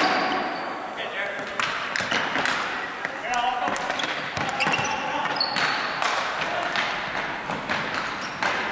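Indoor ball hockey play on a gym floor: repeated sharp clacks of plastic sticks hitting the ball and floor, short squeaks of sneakers on the hardwood, and players shouting, all echoing in the hall.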